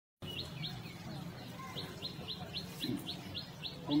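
A bird repeating a short high chirp over and over, about four times a second, over a low steady hum.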